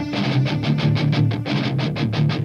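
Hard rock song intro: electric guitar picking a fast, even run of repeated notes over a held low note.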